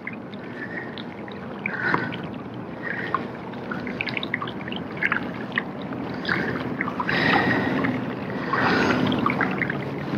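Water lapping against the plastic hull of a pedal-drive fishing kayak, with scattered small clicks and knocks from the boat; the wash grows louder twice, about seven and nine seconds in.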